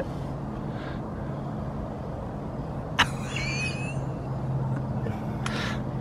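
A steady low mechanical hum, with a sharp click about halfway through followed by a brief wavering high squeak.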